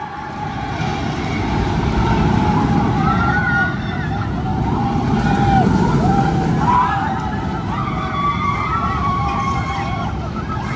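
A Vekoma Boomerang steel roller coaster train running through its inversions: a loud low rumble of wheels on track that swells twice as it passes. Wavering higher tones and riders' voices rise above it.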